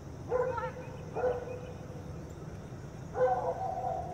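A dog barking three times, the third bark drawn out longer than the first two.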